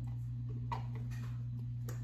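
Two light clicks about a second apart as small plastic craft-paint pots are handled and capped. Under them runs a steady low hum.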